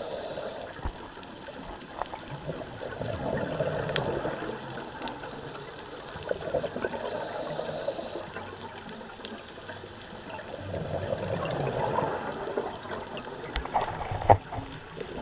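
A scuba diver's exhaled bubbles gurgling past the underwater camera in swells every few seconds, over a steady underwater hiss with faint scattered clicks.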